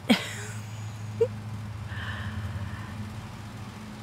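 A short laugh at the start, then a steady low hum with faint background noise.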